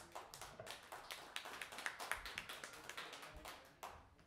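Applause from a small audience: a scattering of individual hand claps, irregular and close together, that stop just before the end.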